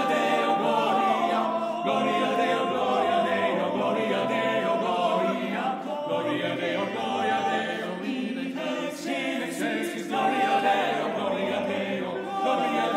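Male a cappella vocal ensemble singing in close harmony, holding chords that shift every second or two, with no instruments.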